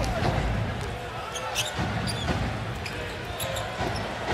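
Basketball game sound in an arena: a steady crowd murmur, with a basketball being dribbled on the hardwood and a few short, sharp squeaks and clicks from the court.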